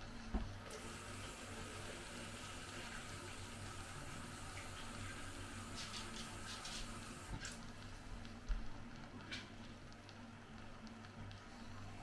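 Kitchen cold tap running steadily into a container to measure out 400 ml of cold water for a casserole mix, turned off after about seven seconds, followed by a few light clicks.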